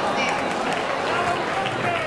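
Voices in a large hall: people talking over a steady murmur of crowd chatter.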